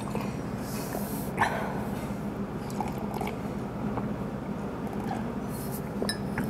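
Room air conditioner running, a steady hum with a low rumble under it, loud enough to be called very noisy. A few faint clicks sound over it.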